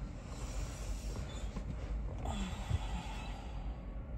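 Steady low rumble in a parked car's cabin, with a faint short vocal sound a little past halfway through.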